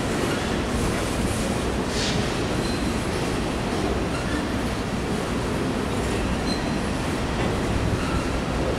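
Empty coal cars of a freight train rolling past, their steel wheels rumbling steadily on the rails, with two brief faint wheel squeals.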